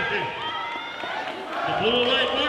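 Several people's voices calling out and talking over one another, with no clear words.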